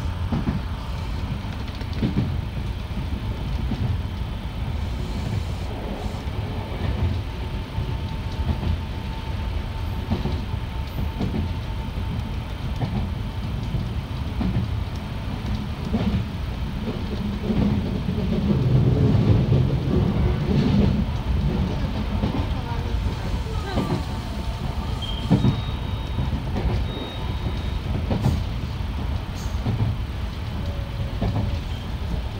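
Electric commuter train running on the rails, heard from inside the driver's cab: a steady low rumble of wheels and motors with occasional sharp clicks from the track, swelling louder about two-thirds of the way through.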